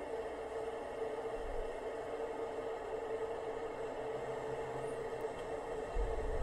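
Steady hiss with a constant faint hum and no distinct events: background noise.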